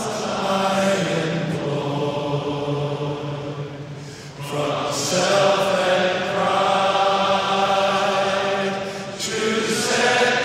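A hymn sung slowly in long held notes, with short breaks between phrases about four seconds in and again near the end.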